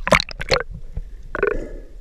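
Seawater splashing and gurgling close around a camera riding at the surface, with several sharp slaps early on and a bigger splash about one and a half seconds in as it goes under.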